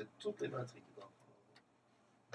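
Faint, muffled voice fragments with a few light clicks in the first second, then near silence.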